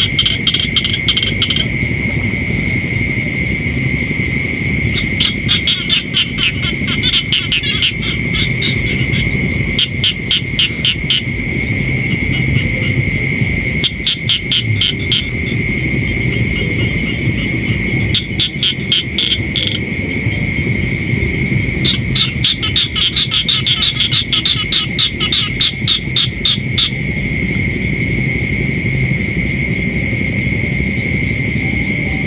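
Frogs calling in rapid pulsed trains that come in bursts of one to several seconds, loudest about 22 to 27 seconds in. Under them runs a steady high-pitched drone and a low rumble.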